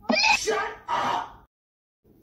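A person's voice making two short vocal outbursts that are not words, the second starting about a second in.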